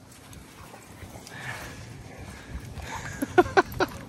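Dogs playing on a muddy beach: soft footfalls and scuffling in the wet sand, then a dog barks about four times in quick succession near the end.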